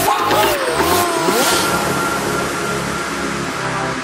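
A motorcycle engine revving in a few quick rises and falls during the first second and a half, then holding a steady note, over background music.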